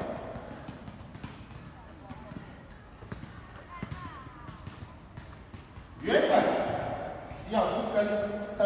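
Soft low thuds of footsteps on paving, walking, for the first six seconds. About six seconds in, a voice over the school's public-address loudspeakers comes in loud, addressing the assembly.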